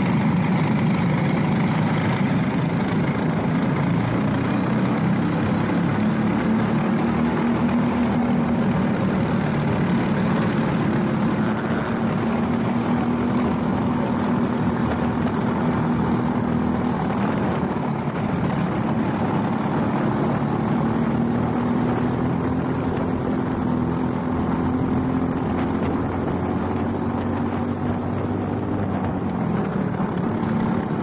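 Briggs & Stratton LO206 single-cylinder four-stroke kart engine running hard under race load, heard onboard, its pitch rising and falling slowly as the driver accelerates and lifts. Other karts' engines run close around it.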